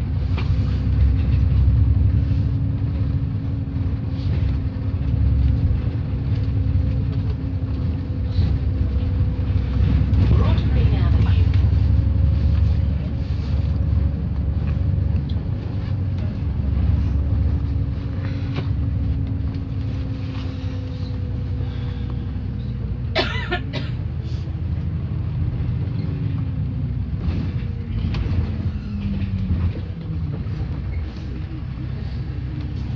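Double-decker bus heard from the upper deck: a heavy, steady rumble of engine and road with a sustained drivetrain whine that falls in pitch near the end as the bus slows. A short burst of sharp rattling clicks comes about two-thirds of the way through.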